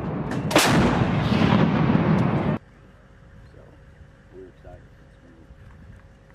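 Towed artillery howitzer firing a single round about half a second in: a sharp blast followed by a dense rumble that cuts off abruptly after about two and a half seconds.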